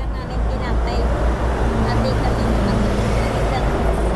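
Steady street traffic noise, dominated by a low rumble, with faint, quiet speech murmured in the middle.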